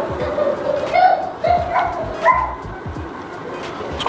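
A few short, high-pitched vocal calls in quick succession, sliding up and down in pitch, over the first two and a half seconds, with music in the background.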